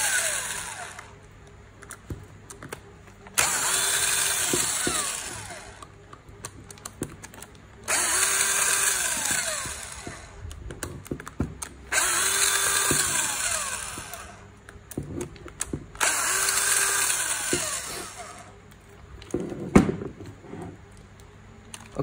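Cordless electric screwdriver with a long bit extension running in repeated spells of two to three seconds, about every four seconds, backing screws out of an aluminium gearbox cover. Each run starts loud and fades as the screw frees. A few sharp metal clicks come near the end.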